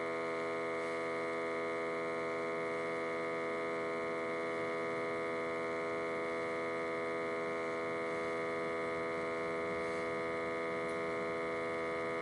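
A steady electrical hum with a buzzy, many-toned sound, holding at one pitch and one level throughout.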